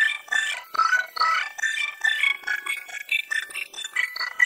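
High-pitched cartoon voice heavily processed with remix effects, chopped into rapid stuttering fragments and layered so that it plays like music.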